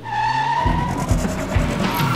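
Channel intro sting: a car sound effect with a steady high tyre squeal, then music with heavy bass beats coming in about halfway through.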